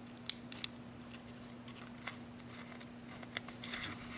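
Hard-anodized aluminium LED conversion head being screwed onto a SureFire E1e flashlight body. A couple of sharp metal clicks come in the first second, then a scratchy run of metal-on-metal thread scraping and clicks near the end as the head is turned home.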